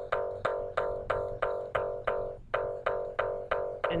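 Tux Paint's paintbrush sound effect looping as the brush is dragged across the canvas: the same plucked-sounding note repeats about four times a second, with a short break a little past halfway.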